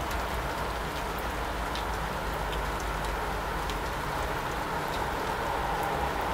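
Steady outdoor background noise, even throughout, with a few faint short high ticks.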